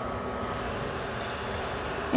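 Steady, even hiss of a pan of semolina and water simmering on an induction cooktop.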